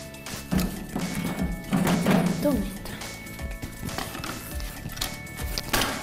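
Thuds and clatter of old wooden boards being broken and gathered for kindling, with a loud knock near the end, over steady background music.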